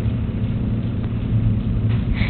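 A steady low hum with an even hiss over it, unchanging throughout.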